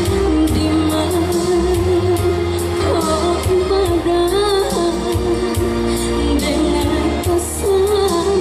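A woman singing a Minangkabau (lagu Minang) pop song into a microphone, holding long wavering notes over instrumental backing with a steady beat.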